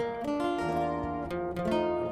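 Acoustic guitars of a sierreño band ringing out held chords that change a few times, a quiet instrumental stretch between spoken shout-outs.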